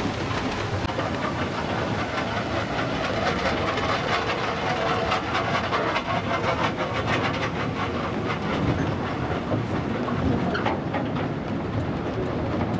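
Open wooden funicular car running up its cable-hauled track: a steady rumble of the wheels on the rails with a rapid clatter of small clicks.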